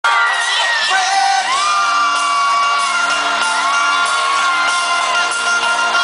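Live pop music playing loudly over an arena sound system, with fans in the crowd screaming and whooping in long, high cries over it.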